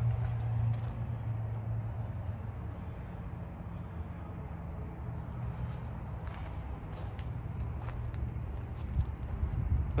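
A steady low mechanical rumble, with a few faint clicks in the second half.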